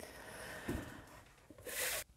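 Faint handling noise of a cardboard album being moved on a cutting mat, with a soft knock a little under a second in and a brief hiss near the end.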